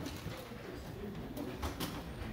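Indistinct murmur of voices across a stage, with a few light knocks and clatter of music stands and instruments being handled near the end.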